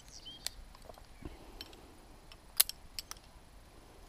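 Metal rope-rescue hardware, carabiners and a rope grab, clicking as it is handled on the haul system: several sharp clicks, the loudest about two and a half seconds in.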